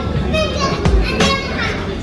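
Children's voices, talking and calling out, over background music.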